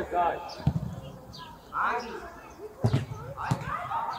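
A football being kicked and bouncing on the pitch: three dull thuds, one a little under a second in and two close together near the end, among players' shouts.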